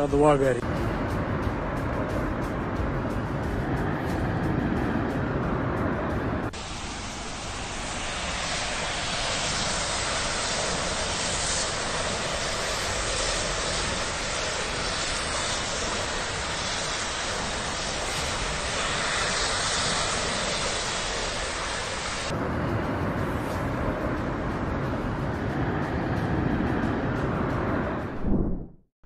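Steady rushing noise from phone recordings of a large refinery fire, with a person's laugh near the start. The noise changes abruptly twice, about a third of the way in and again about three-quarters in, as one recording gives way to another.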